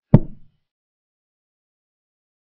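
Chess software's move sound effect: one short, wooden-sounding knock of a piece being set down, as a knight moves to an empty square. It dies away within half a second.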